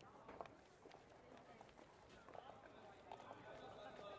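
Very faint outdoor ambience: a low murmur of voices with scattered light clicks and taps.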